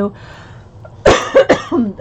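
A woman coughs, a loud sudden cough about a second in followed by a couple of shorter ones.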